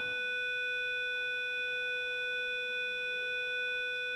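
A steady electronic tone with several higher overtones, holding one pitch and one level without a break.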